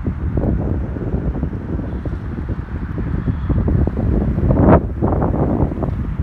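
Wind buffeting the microphone in loud, uneven gusts, with the strongest gust a little under five seconds in.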